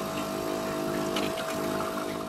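Philips automatic bean-to-cup coffee machine's pump humming steadily while it brews coffee into the cup.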